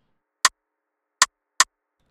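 Rim-shot drum sample from an FL Studio channel playing solo: three short, sharp hits, the last two close together. Its Mod Y (filter resonance) is at maximum, which makes it sound very crispy.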